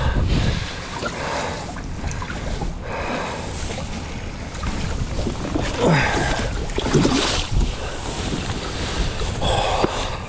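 Wind buffeting the microphone on an open boat, with low knocks of handling near the start and about seven and a half seconds in, and two short gliding squeaks about six and seven seconds in.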